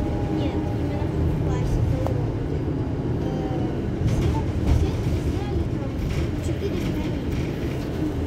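Iveco Crossway LE Euro 6 bus idling at a stop: a steady low engine rumble from the rear of the stationary bus.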